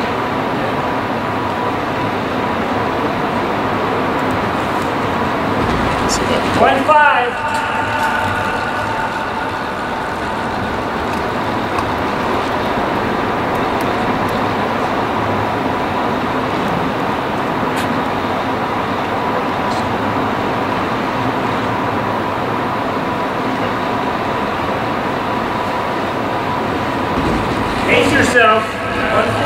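A track bike on disc wheels passes on the wooden velodrome boards about seven seconds in: a whirring that sweeps up in pitch and then fades. The whir comes again at the very end as the bike comes round once more. Both passes sit over a steady background hiss with a faint steady whine.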